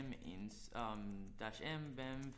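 A man speaking, spelling out a terminal command, over a low steady hum.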